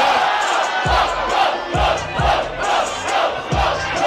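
Rap-battle crowd shouting and chanting in rhythm over a hip-hop beat, with its kick drum hitting under the voices.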